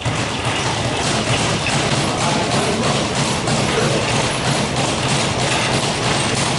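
Boxing gloves thudding again and again as punches land on a sparring partner's raised gloves, with music playing in the background.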